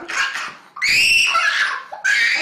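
Toddler screaming and crying while a nasal swab is in his nose: a short sob, then a loud, high-pitched wail from about a second in.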